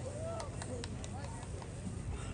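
Shouting voices of players and spectators at a soccer match, with a few sharp knocks in the first second, over a low steady rumble of the open field.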